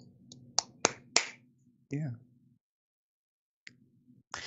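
Three sharp clicks in quick succession, about a third of a second apart, followed by a short spoken 'yeah'.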